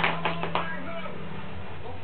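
Black Labrador chewing on a plush toy: about four quick crunching bites in the first half-second, over a steady hum.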